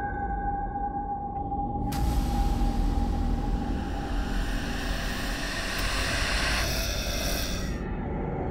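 Portable radio giving out a steady high whine, then from about two seconds in a loud hiss of static that cuts off just before the end, as it is tuned, over a low rumbling drone.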